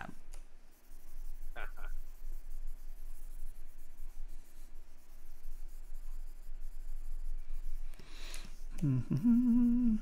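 A man hums a single held note near the end, after a short breath, with a brief vocal sound about a second and a half in; otherwise only low background noise.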